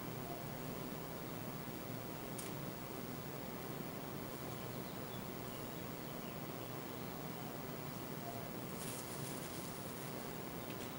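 Quiet steady room hiss with the faint scratch of an oil-paint brush's bristles on canvas, strongest in a short stroke near the end, plus one small tick about two seconds in.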